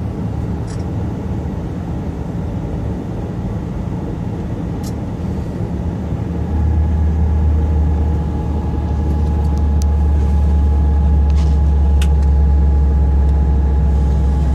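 Steady low rumble of an SRT high-speed train (KTX-Sancheon type) heard from inside its driver's cab as it creeps slowly into the station. About halfway through, a louder deep steady hum sets in, with a faint steady whine above it and a few light clicks.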